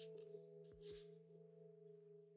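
Faint background music of soft, steady held notes with a pure, bell-like tone that shift pitch now and then. Faint swishes and light clicks of trading cards being handled and slid across a playmat sit above it.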